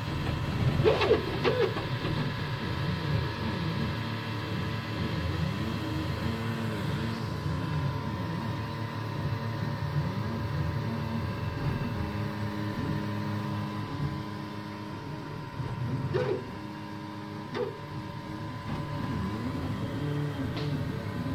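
UP BOX 3D printer at work: its stepper motors whine in tones that rise and fall and hold steady as the print head travels back and forth laying down the part, over a steady fan tone. A few short louder bursts come about a second in and again near the end.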